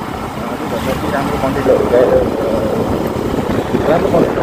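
Motorcycle riding along a paved road: a steady engine and wind rumble, with a person's voice over it.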